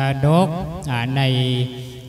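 A man's voice intoning Thai in a chanted, sing-song delivery, holding long notes on a low, nearly level pitch. It breaks off briefly near the end.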